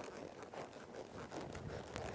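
Faint, irregular scuffing and rustling from a horse loping in soft arena dirt as it comes around a barrel, hoofbeats mixed with tack and clothing rustle.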